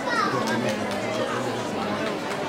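Many voices talking at once in a hall, children's voices among them: audience chatter while a group of young dancers takes its places.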